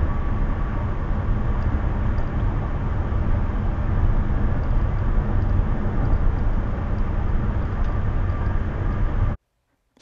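Steady road and wind noise inside a car cruising at highway speed, about 65 mph, picked up by the dashcam's own microphone; it cuts off suddenly near the end.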